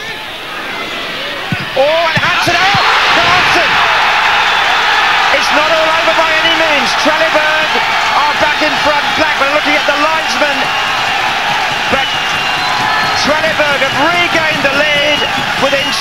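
Football stadium crowd bursting into a loud cheer a couple of seconds in and keeping up sustained cheering and shouting: the home fans celebrating a goal.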